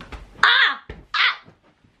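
A woman's shrill laughter: two short, high-pitched bursts, a little under a second apart.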